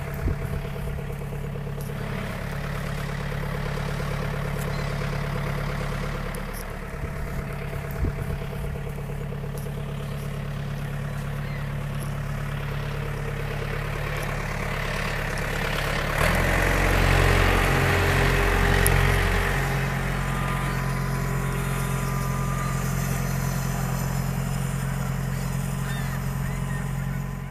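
John Deere compact tractor's diesel engine running at idle, then about sixteen seconds in it is throttled up and gets louder as the tractor pulls away, before settling into a steady run.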